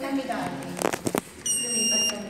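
Schindler elevator push-button panel beeping once in acknowledgement as a car button is pressed: a short steady high beep near the end, after a couple of sharp clicks about a second in.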